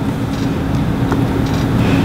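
Steady low hum and hiss of background room noise, with a faint click about a second in.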